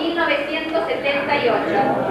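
A woman's voice reading aloud into a microphone.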